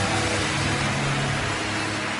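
Sustained low chord from the worship music, held under a dense, even wash of noise. The low notes thin out near the end.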